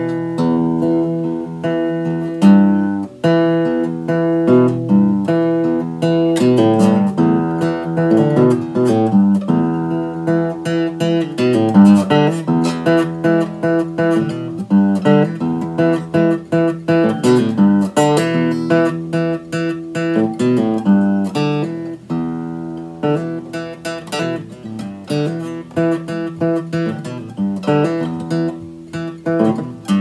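Steel-string acoustic guitar in standard tuning playing blues licks and chords in the key of E, a continuous run of plucked notes.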